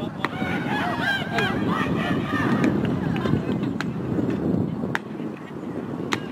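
Outdoor ambience with a murmur of distant voices and wind on the microphone. Clusters of high, arching calls fill the first two seconds, and short sharp clicks sound about once a second.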